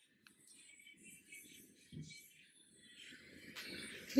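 Near silence: room tone, with a faint click early and a soft, short thump about two seconds in.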